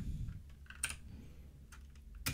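A few quiet keystrokes on a computer keyboard, widely spaced, with one clearer key click a little under a second in.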